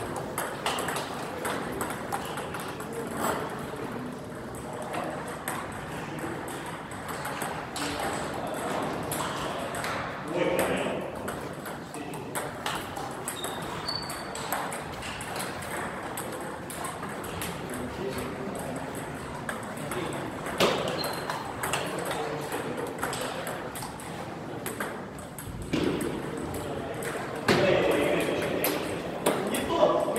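A table tennis ball clicking off paddles and bouncing on a STIGA Expert table in repeated sharp ticks during rallies, with gaps between points.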